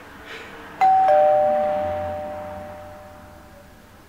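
Two-note ding-dong doorbell chime: a higher note about a second in, then a lower one just after, both ringing on and fading slowly.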